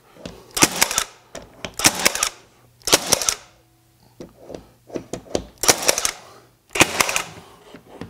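Milwaukee M18 FUEL 15-gauge cordless finish nailer driving nails into hardwood wall boards: five sharp shots in two groups, the first three about a second apart, then a pause, then two more.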